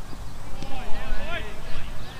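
Distant shouted calls from players on a cricket field during a delivery, over a constant low rumble.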